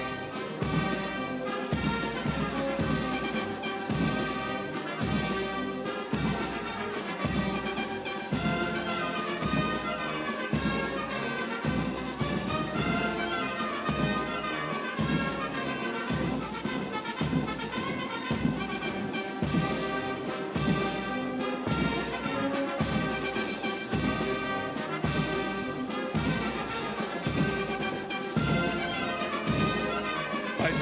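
Military brass band playing a march, trumpets and trombones over a steady drum beat.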